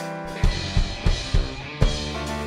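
A live rock band plays, with electric guitar and electric bass holding chords under about five heavy drum-kit hits.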